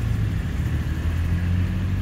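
A motor vehicle engine running at idle: a steady low hum.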